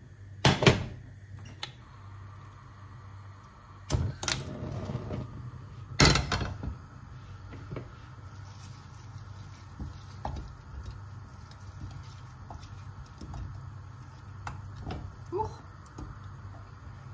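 Kitchen clatter of utensils and cookware: three sharp knocks about half a second, four and six seconds in, then a few faint clicks, over a steady low hum.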